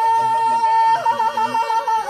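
Man singing a Mongolian long song (urtiin duu): one high note held steadily, broken by quick trilled ornaments about halfway through and again near the end, over a steady lower drone.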